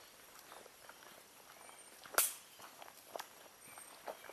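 Faint footsteps of a person walking on a dirt forest path, a run of soft irregular steps with one louder, sharper step about two seconds in.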